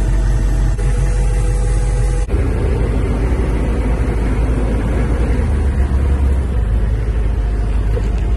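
Loud, steady low drone of a military tactical vehicle's diesel engine heard from inside the cab. The sound changes abruptly about two seconds in.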